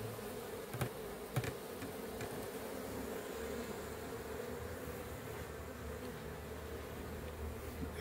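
A swarm of Africanized honeybees buzzing steadily at a hive box as they move in. Two short clicks sound about a second in.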